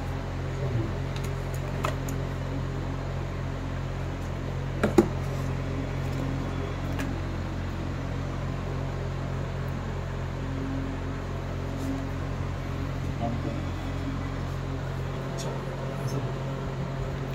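A steady low electrical hum, with scattered light clicks and taps from the phone and its cardboard box being handled; the sharpest knock comes about five seconds in.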